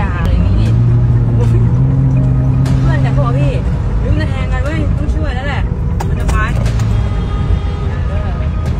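Road traffic noise heard from inside a moving car, with raised voices and a low steady drone in the first few seconds.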